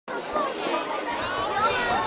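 Audience chatter: many people talking at once, with no single voice standing out.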